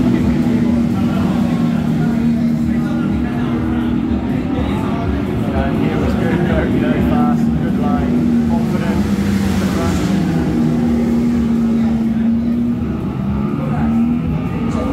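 Ducati Panigale V4 S V4 engine running on track, heard from an onboard lap video played through a TV's speakers, its pitch shifting up and down. Voices murmur underneath.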